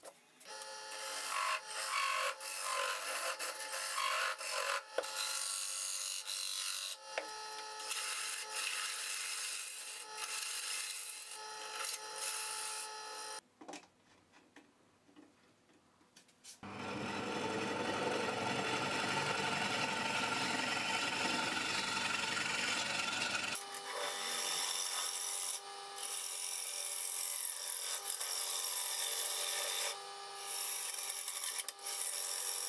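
Wood lathe spinning a basswood disc while a turning gouge cuts its face: a dense scraping hiss over steady tones from the machine. The cutting stops for about three seconds near the middle. A deeper, steadier noise then runs for about seven seconds before the scraping cuts resume.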